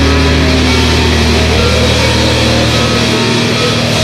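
Hardcore punk band's demo recording: loud distorted electric guitar and bass holding low notes in a dense wall of sound.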